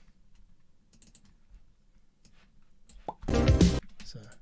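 A few faint computer keyboard and mouse clicks, then near the end a short burst of music, about half a second long, played back from the editing software.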